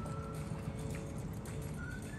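Soft background music: held high notes stepping from one pitch to the next over a low, busy bed.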